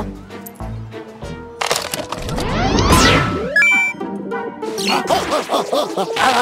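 Cartoon music with a beat, then a swelling electronic whoosh that sweeps in pitch and peaks about halfway through, followed by a quick burst of clicks and beeps as the arcade game machine starts up.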